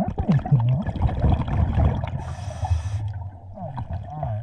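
Scuba diver breathing through a regulator underwater: exhaled bubbles gurgle loudly for about two seconds, then the hiss of an inhale, then bubbling starts again near the end.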